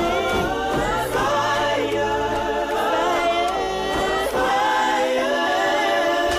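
Music: a choir of voices singing held "ooh" harmonies.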